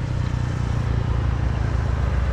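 Small motorbike engine idling steadily with an even low throb.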